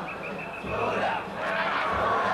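A crowd of danjiri rope-pullers shouting in chorus, over general crowd noise. A steady high tone sounds along with them and stops about a second in.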